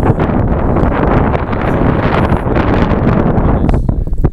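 Wind buffeting the microphone: a loud, steady rush of noise.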